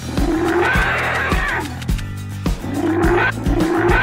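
A cartoon dinosaur's roar, heard twice, each call lasting about a second and a half, over background music with a steady beat.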